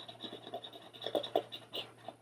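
Metal tweezer tips scratching and rubbing over a paper sticker on a planner page as it is pressed down flat: a run of short, irregular scratches, a little louder about a second in.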